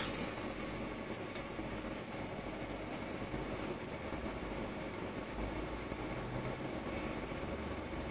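Steady, even background hiss and hum with no distinct events.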